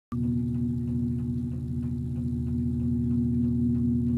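1954 Webcor Musicale 333-1 record changer running, giving a steady low hum with a light regular ticking of about four ticks a second.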